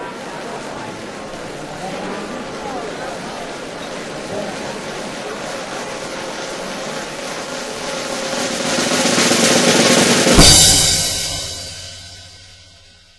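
Snare drum roll swelling to a crescendo, ending about ten seconds in with one loud crash that rings away.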